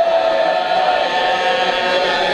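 Several voices in a drawn-out, wavering wail of lament held on one pitch: mourners crying out together during a recitation of a martyrdom.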